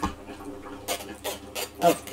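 Metal spoon scraping cooked pumpkin pulp out of a metal mesh strainer: a sharp click at the start, then a few short scrapes about a second in.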